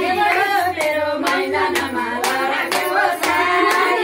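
A group of women singing a folk song together, with hand clapping and beats of a madal, a Nepali barrel-shaped hand drum, keeping time at about two beats a second.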